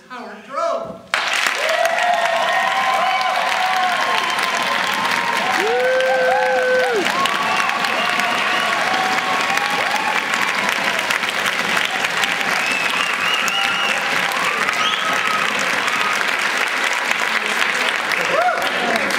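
A large crowd applauding and cheering, with shouts and whoops over the clapping, starting suddenly about a second in and staying loud.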